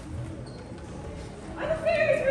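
A child's voice giving one loud, drawn-out high cry that begins about a second and a half in, after low room sound.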